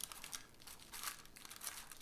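Faint pencil scratching on tracing paper: a string of short strokes, with light crinkling of the thin paper.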